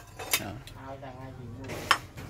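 Metal spoons clinking against ceramic bowls and plates at a set meal table: a light clink early and a sharper, louder one near the end, with low voices talking in between.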